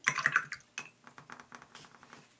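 Paintbrush being rinsed in a water jar, clicking and tapping against the jar: a sharp cluster of clicks at first, then a quick run of smaller ticks that fades away.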